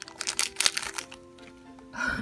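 Crinkling of a plastic blind-bag wrapper being opened by hand, a few sharp rustles in the first second, over soft background music.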